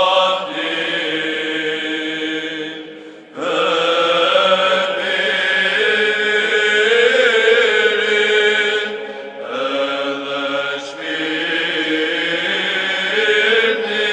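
Orthodox church chant: voices singing long held notes in slow phrases, with short breaks about three seconds in and again near ten seconds.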